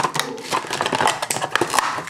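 Scissors snipping and clear plastic packaging crinkling and rustling as a puzzle cube is cut free: a run of irregular small clicks and crackles.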